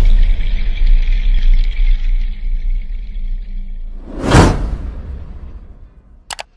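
Logo-reveal intro sting: a deep bass rumble under a shimmering music bed that fades out. A single loud whoosh comes a little past four seconds in, then the sound dies away.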